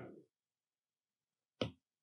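A single short tap of a stylus on a tablet's glass screen about one and a half seconds in, with near silence around it.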